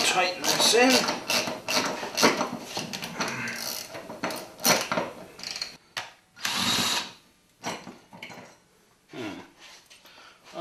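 A cordless drill-driver drives a lag screw through a steel wall bracket into a stud. For the first six seconds there is rapid clicking and rattling of metal from the screw and bracket. About six and a half seconds in, the drill motor makes one short steady run, followed by a few light clicks.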